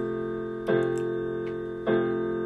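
Keyboard playing held chords, with a new chord struck about two-thirds of a second in and another near the end.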